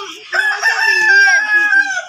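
A rooster crowing: one long crow that starts about a third of a second in and is held for about a second and a half.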